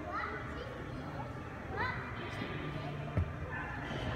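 Indistinct children's voices with short rising calls near the start and just before two seconds, over the background noise of a busy indoor space, and a single sharp thump a little after three seconds.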